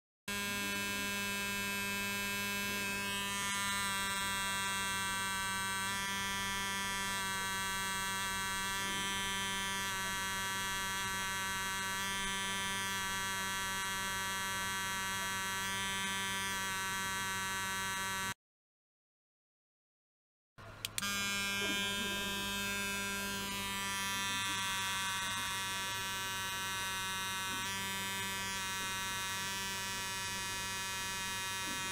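Electric toothbrush running with its head pressed against a plate: a steady, even-pitched buzz, with fainter higher tones coming and going. About 18 seconds in it cuts out for two seconds, then comes back with a click.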